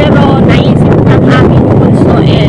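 Loud steady engine drone of a moving vehicle, with wind buffeting the microphone.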